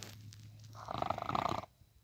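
A child's voice making a short rasping growl, about a second long, near the middle, over a faint low hum.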